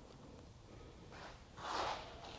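A person's short breathy exhale near the end, after a fainter one about a second in; otherwise quiet.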